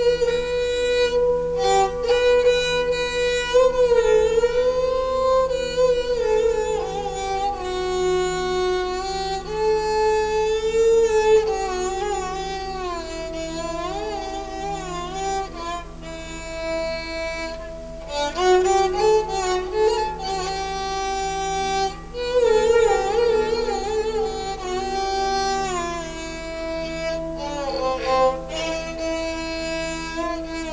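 Esraj played with a bow: a slow melody of long, sliding notes with vibrato, over sustained chords from an electronic keyboard.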